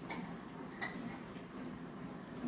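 Small clicks and mouth sounds from a toddler eating chopped orange pieces with her fingers off a small plate, with two sharper clicks a little under a second apart.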